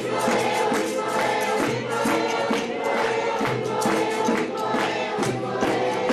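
A choir of children and adults singing with instrumental accompaniment, over a steady beat of percussive strokes about twice a second.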